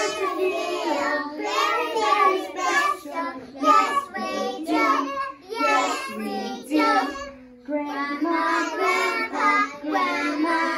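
A group of preschool children singing a song together, with a brief break about seven seconds in.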